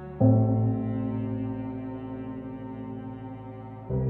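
Background music: a deep, sustained brass-like note begins just after the start and slowly fades, and a new low note comes in near the end.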